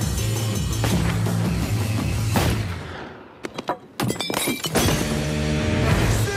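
Film-trailer music with a steady beat that drops away about three seconds in, followed by a quick run of sharp cracks with glass shattering, as bottles set on a fence rail are shot at; the music then resumes.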